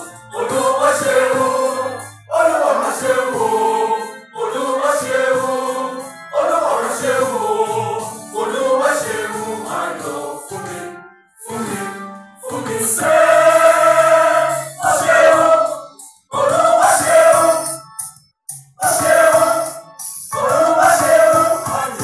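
Small mixed choir of women and a man singing a choral arrangement together, in phrases of a second or two broken by short breaths, with a few longer pauses in the middle.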